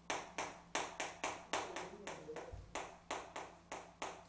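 Chalk writing on a blackboard: a run of sharp taps and short scrapes, about three to four strokes a second.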